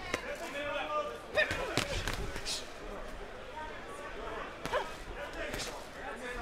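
Boxing gloves landing on a boxer: several sharp smacks, the loudest about a second and a half in, with another pair close together and one more near the end, over voices in the arena.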